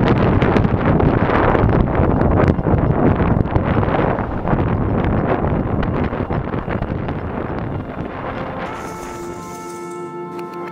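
Wind buffeting the microphone of a camera mounted outside a moving car, mixed with road noise, fading down over the last seconds as ambient music with long held tones comes in.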